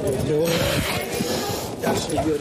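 Indistinct human voices, with a held, wavering vocal sound over a noisy background, but no clear words.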